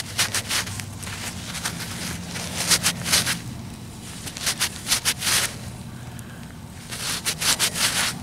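Gloved fingers rubbing dirt off a freshly dug Indian head penny close to the microphone, in four short spells of quick scratchy strokes.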